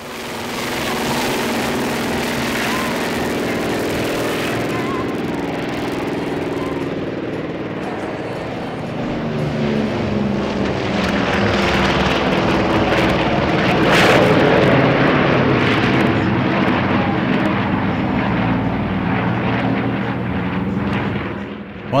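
The twin Pratt & Whitney R-2000 radial piston engines of a DHC-4 Caribou drone as it flies a low pass and climbs away. The pitch of the drone slides down as it goes by, and the sound swells to its loudest about two-thirds of the way through.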